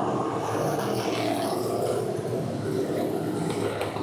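A pack of factory stock race cars running at speed around a dirt oval: a steady blend of several engines, heard from the grandstand.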